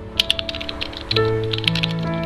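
Keyboard-typing sound effect: a quick, irregular run of sharp keystroke clicks, over background music with sustained notes.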